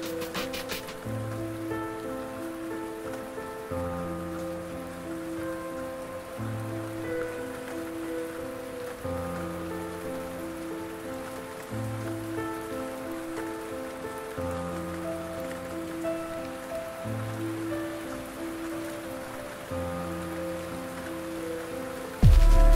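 Rain pattering steadily under soft lofi hip hop chords and bass that change slowly, every couple of seconds. There are a few drum hits in the first second, then no beat.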